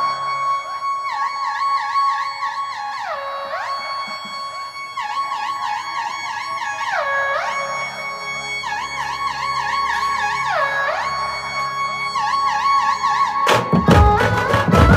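Electronic keyboard lead of a dhumal band playing a melody with wide sweeping pitch bends and fast trills, with almost no drumming under it. Near the end the band's drums come in loudly.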